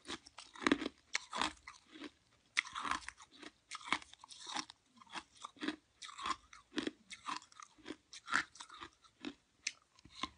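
A piece of ice being bitten and chewed close to the microphone: irregular crisp crunches, a few each second, with short pauses between bites.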